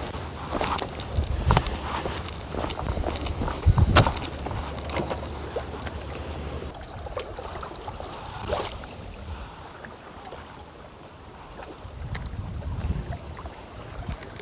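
Sea water lapping against the rocks of a seawall, with wind on the microphone and scattered knocks and clicks of fishing gear being handled; the loudest knock comes about four seconds in.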